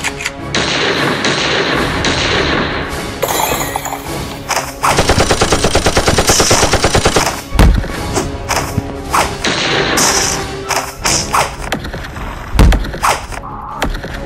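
Gunfire sound effects over action background music: scattered single shots, then a rapid automatic burst of about two seconds starting about five seconds in, with two heavy booms, one just after the burst and one near the end.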